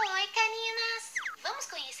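A high-pitched, sing-song voice calling out a greeting, with one syllable held for about half a second, then running on into speech.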